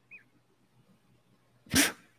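Near silence, then near the end a man's short, breathy burst of laughter.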